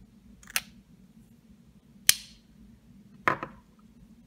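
Three sharp clicks and knocks of a metal lipstick tube and a jewelled bow-shaped lipstick case being handled and set down on a table. The second click is the loudest.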